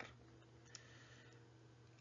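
Near silence: room tone with a faint steady hum and a single faint click a little under a second in.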